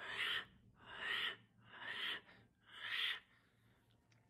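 A person breathing out hard four times, about once a second, close to the microphone.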